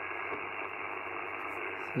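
Icom IC-705 HF transceiver's speaker putting out a steady, dull hiss of band noise in LSB on the 40-metre band as the VFO is tuned up the band, with no signals coming through: the band is quiet.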